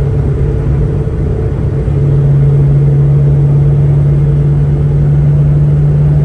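Terminator SVT Cobra's supercharged 4.6-litre V8 heard from inside the cabin at highway cruise, a steady engine drone with road noise that grows stronger about two seconds in.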